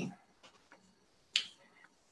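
A pause in a woman's speech: her last word trails off at the very start, then a single short, sharp click about a second and a half in.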